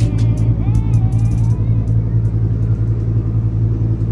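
A loud, steady low hum inside an enclosed observation-wheel gondola. Music with singing fades out during the first second and a half, and there are a few faint clicks.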